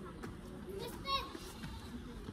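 Faint voices, a child's among them, briefly louder about a second in.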